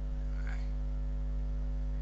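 Steady low electrical hum with no music, a mains hum carried in the recording, with a faint brief sound about half a second in.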